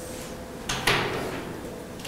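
A short rustling scrape ending in a single sharp knock, over a faint steady hum.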